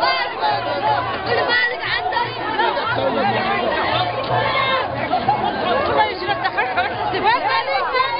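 A marching street crowd: many voices talking and calling out over one another.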